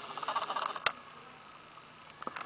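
Faint handling noise from a camera being moved about, soft rustles and ticks with one sharp click a little under a second in.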